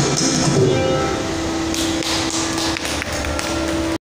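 South Indian classical vocal with violin and mridangam accompaniment. The singing line moves for about a second, then settles on one held note, with light taps on the mridangam's drumheads scattered over it.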